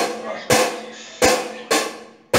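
A student playing an acoustic drum kit slowly and haltingly: three separate hits, the last two closer together. Each hit is a low bass-drum thump with a bright, ringing high part on top.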